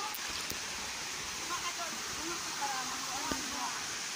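Steady rushing of a small waterfall pouring into a rock pool, with faint voices in the background.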